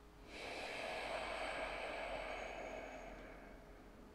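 A single long, slow breath from the seated meditator, about three seconds long, swelling and then fading away.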